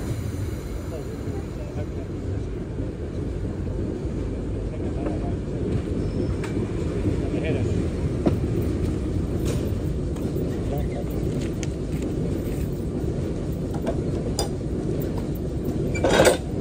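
Diesel switcher locomotive running with a steady low rumble as it closes slowly on a car for coupling, with a few faint clicks of metal.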